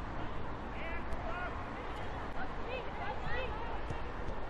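Players' short shouts and calls across a football pitch, many brief cries scattered over a steady background hiss of stadium noise.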